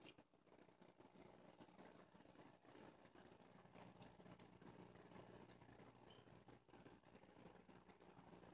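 Near silence: faint room hum with a few soft clicks from small plastic pin connectors being handled.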